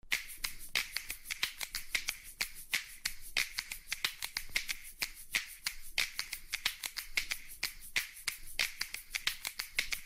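Rapid, irregular sharp clicking, several clicks a second.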